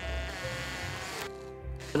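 Makita cordless drill-driver driving a long screw into a timber board: a motor whine whose pitch sags under load, then runs on briefly at a lower pitch.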